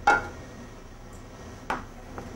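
Two sharp clinks of a kitchen utensil against a dish, the first ringing briefly and the second about a second and a half later.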